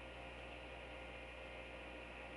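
Steady low electrical hum with a faint hiss.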